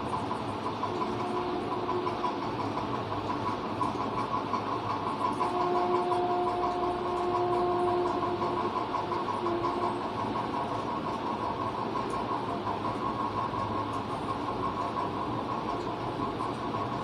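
A steady mechanical hum, with a faint held tone that comes in briefly about a second in and again for about four seconds in the middle.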